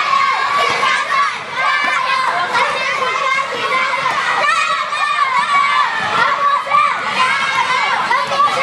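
Crowd of children shouting and cheering, many voices overlapping without a break.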